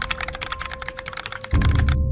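Computer keyboard typing sound effect: a fast run of key clicks for about a second and a half, laid over background music whose bass comes back in near the end.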